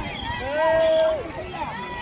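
Men shouting and yelling across an open field, several voices overlapping, with one loud drawn-out shout about half a second in.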